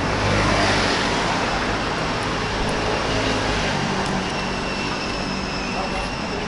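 City street traffic: a steady rumble of passing cars, swelling in the first second as a vehicle goes by.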